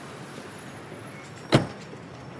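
A Smart fortwo's door slammed shut once, a single sharp thud about one and a half seconds in, over a steady low street background.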